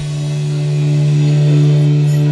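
A live rock band holds its closing chord after the drums stop: one steady low-pitched tone rings on and swells slightly, with no drum hits.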